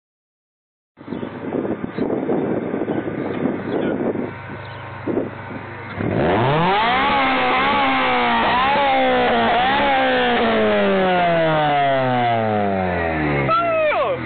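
Honda CRX's B17 1.6-litre DOHC VTEC four-cylinder running through a large-tipped aftermarket exhaust. It sounds rough and low for the first few seconds, then about six seconds in the revs climb sharply, waver with a few throttle blips, and slowly fall back down.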